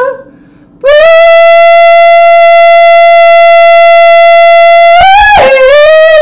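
A woman singing a cappella without words: after a brief pause she holds one long, steady high note for about four seconds, then breaks into wavering notes near the end.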